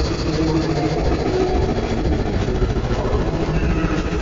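Slowed-down, effect-distorted soundtrack of an Oreo commercial, heard as a continuous low rumble with faint held tones.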